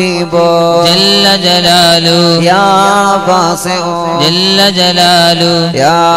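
Devotional chanting of the names of Allah, each name followed by the refrain 'jalla jalaluhu'. It is sung without a break in long, drawn-out melodic phrases that slide between notes.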